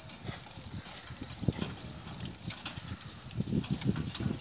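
Hoofbeats of a pony trotting on grass while pulling a carriage: soft, irregular thuds that grow louder as it draws near, loudest near the end.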